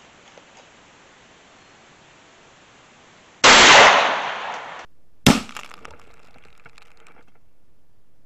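A .308 bolt-action Howa rifle fires a single hot-loaded 110-grain V-Max round about three and a half seconds in: a loud, sharp report that fades over about a second and a half, then cuts off. Just after five seconds a second sharp crack follows from the target end as the shot strikes the water balloon.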